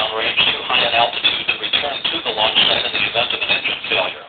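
Speech over a narrow-band, radio-like channel, talk running through without a break.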